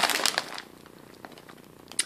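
Plastic snack bag crinkling as it is turned over in the hand for about half a second, then a faint tick and a sharp click near the end.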